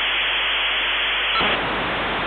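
Loud, steady hiss of electronic static, like white noise, with a slight change in its grain about a second and a half in.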